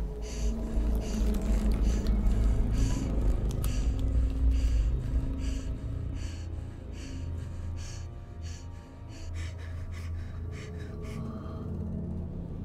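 Rapid, shaky panicked breathing and gasping, two to three breaths a second, over a low rumbling drone of horror-film score that is strongest in the first half.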